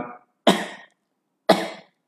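A man coughing twice, about a second apart; each cough starts sharply and dies away quickly.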